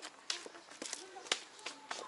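Footsteps on a concrete path: about five short, uneven steps in two seconds.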